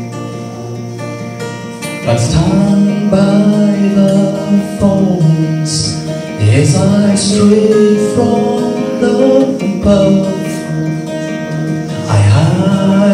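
A man singing to his own acoustic guitar. For the first two seconds only the guitar sounds, then his voice comes in over the strumming, with a short break about ten seconds in before he sings on.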